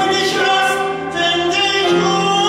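A man sings a musical-theatre song live into a handheld microphone over instrumental accompaniment, with a short break between phrases about a second in.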